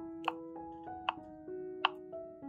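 A kitchen knife cuts down through a block of feta and taps the wooden cutting board three times, sharp knocks roughly 0.8 s apart, over soft piano background music.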